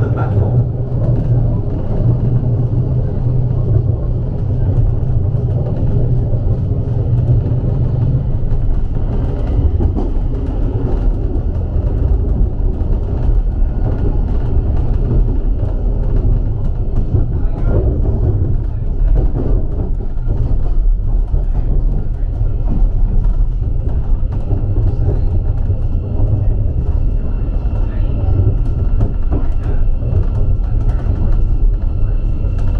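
Steady low rumble inside the passenger saloon of a Class 717 electric multiple unit running along the line. In the last few seconds, faint steady tones come in as the train slows into the station.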